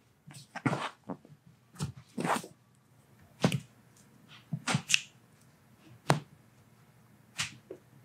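Toe and forefoot joints popping during a chiropractic adjustment, in a string of short, sharp cracks and clicks about a second apart, one of them a single crisp pop a little past the middle.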